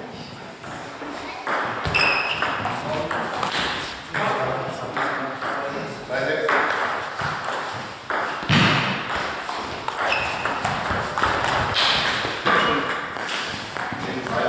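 Table tennis ball played back and forth in doubles: a run of sharp clicks as the ball strikes the bats and bounces on the table, over several exchanges.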